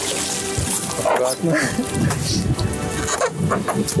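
Water splashing and streaming off soaked clothes as a person is hauled out of the river over the side of a small boat, with strained grunts and background music.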